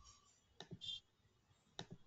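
Faint computer mouse clicks, two sharp ones a little over a second apart, over near silence.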